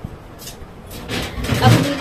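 A wardrobe (almirah) door being pulled open: a brief hiss about half a second in, then a longer scraping rush of noise from about a second in as the door swings. A short word is spoken near the end.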